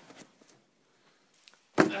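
Near quiet for most of the time, then near the end a sudden loud thump, with a shouted "on!" at the same moment.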